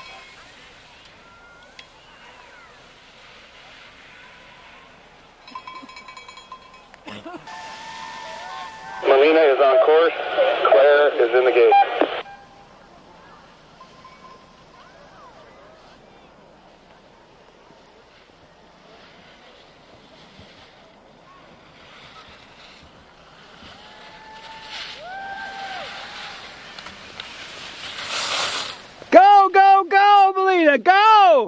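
Spectators yelling encouragement to a ski racer, a loud burst of shouting for about three seconds around ten seconds in and again at the very end, over a quiet background of distant voices.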